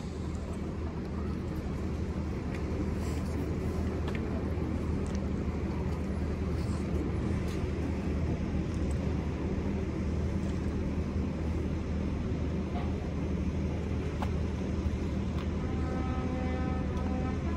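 Steady low drone of an idling vehicle engine, with faint outdoor crowd noise and a few small clicks.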